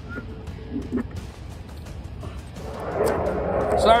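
An F-22 Raptor jet flying over: its twin turbofan engines make a broad jet noise that swells steadily louder from about halfway in. A few faint clicks come before it.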